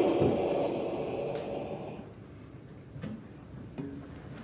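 Crash sound effect for a puppet's fall: a clatter with a metallic ring, fading away over about two seconds. A sharp click follows, then a few faint knocks.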